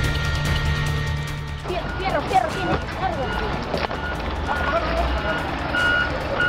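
A sustained music bed that cuts off suddenly about a second and a half in, giving way to raised, unintelligible voices in the street. Short repeated beeps from a vehicle's reversing alarm sound near the end.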